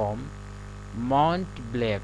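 A steady electrical mains hum runs beneath a man's voice. The voice speaks briefly at the start and again from about a second in.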